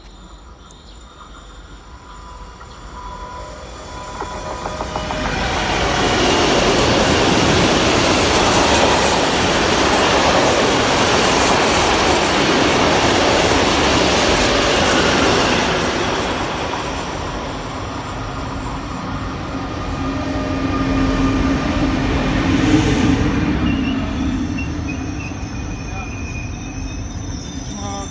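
A long freight train of covered coil wagons passes close by on the station track: rolling wheel and rail noise builds over a few seconds and holds loud for about ten seconds before fading. Then a double-deck regional train drawn by a BR 182 electric locomotive pulls in and brakes, with a steady hum and a brief wheel squeal, amid crowd voices on the platform.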